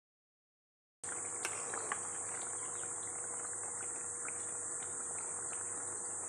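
Insects chirring steadily at a high pitch, starting about a second in after silence, with a few faint clicks.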